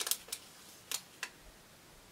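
A small paper yarn label handled between the fingers as it is unfolded, giving a few faint crinkles and clicks, the first near the start and the last about a second and a quarter in.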